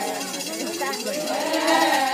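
Ponung dance chant of the Adi: a chorus of many women's voices singing together in overlapping lines, over a fast, steady metallic jingling rattle.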